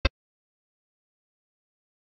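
Digital silence, broken only by one very short click-like burst right at the start.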